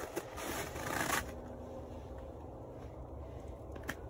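Rustling handling noise from a fishing rod and reel being worked over a hooked fish, lasting about the first second, then faint low background with a single click near the end.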